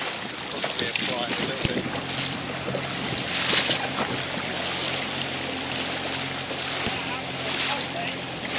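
Wind on the microphone and water washing around a small boat at sea. A steady low motor hum comes in about two seconds in, with louder rushes about three and a half seconds in and again near the end.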